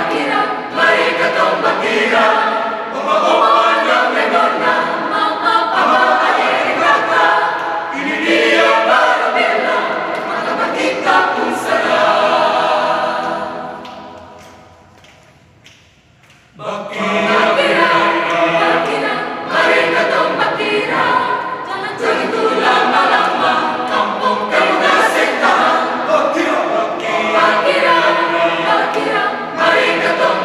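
Mixed choir of young men and women singing a cappella in chords. About twelve seconds in, a held chord fades away to near quiet, and about sixteen and a half seconds in the choir comes back in at full volume.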